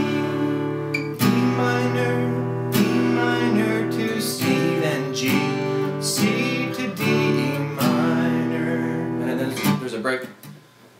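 Steel-string acoustic guitar strummed in a steady rhythm, open chords struck about once a second and left ringing between strokes. The playing stops just before the end.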